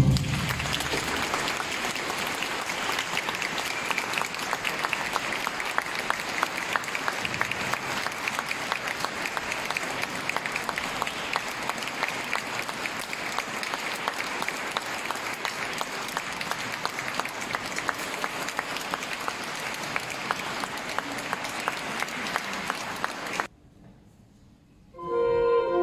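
Audience applauding, a steady dense clapping that begins as the music ends and cuts off abruptly near the end.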